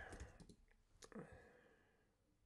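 Faint clicks of computer keyboard keys typing a search query, a handful of taps in the first second or so, then near silence.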